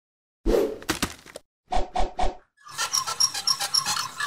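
Logo sting of sound effects: a sudden burst with a short tail, three quick pulses a quarter-second apart, then a busy run of bright, repeated chime-like notes.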